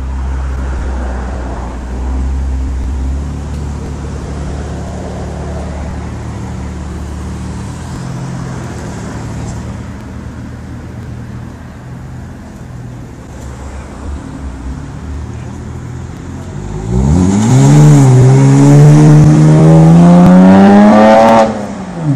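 BMW 1M's twin-turbo straight-six, breathing through an Akrapovič exhaust, idling steadily with a low hum. About seventeen seconds in it accelerates hard. The note turns loud and rises in pitch, dips briefly as at a gear change, and climbs again until it cuts off abruptly just before the end.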